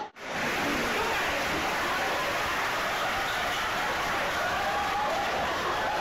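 Audience applause, steady and even, with voices mixed in.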